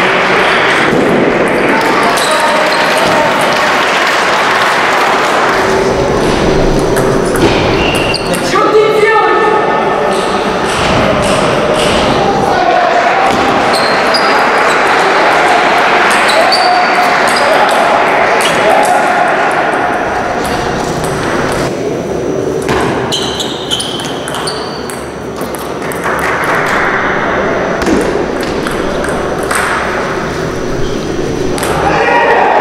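Table tennis ball clicking off rubber paddles and bouncing on the table in rallies, with the chatter of many voices echoing in a large sports hall throughout.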